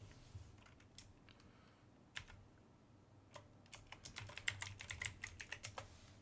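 Computer keyboard typing, faint: a few separate keystrokes, then a quick run of keys in the second half as a sudo password is entered at a terminal prompt.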